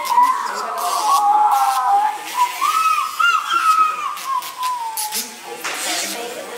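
A falcon held down for treatment, calling in long, high, wavering cries that rise and fall with hardly a break, dying away about five seconds in.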